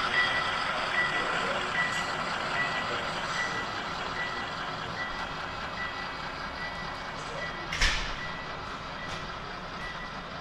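HO-scale diesel locomotive's sound-decoder bell ringing steadily, one stroke about every 0.8 s, over the running noise of the passing model freight train. A single sharp knock comes near the end.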